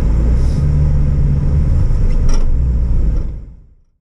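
Car interior noise while driving: a steady low engine and road rumble inside the cabin, with a steady engine hum from about half a second in for roughly a second and a half. The sound fades away to silence in the last second.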